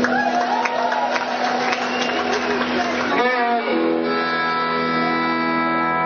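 Concert audience cheering and shouting after a band introduction. A little over halfway through, the rock band comes in with a long, steady, sustained chord.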